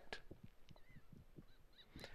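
A few faint, short calls of laughing gulls, coming more often in the second half.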